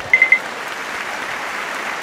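Applause sound effect, a steady even clapping, opened by three quick high pips.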